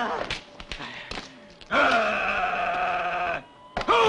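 A few short thuds of blows, then a man's long drawn-out cry held on one pitch for about a second and a half.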